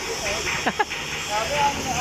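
Brief, low voices of people talking, over a steady high-pitched hiss of background noise.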